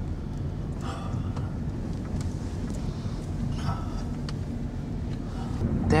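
Car engine and tyre noise heard from inside the cabin while driving: a steady low drone with a few faint light knocks.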